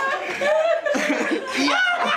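A group of people laughing, with snatches of speech mixed in.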